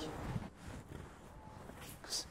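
Quiet pause: faint room noise with light rustling of cotton gi fabric as two grapplers hold closed guard on the mat, and a brief soft hiss near the end.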